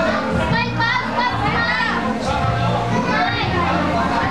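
Children's voices and playful chatter around a swimming pool, over steady background music.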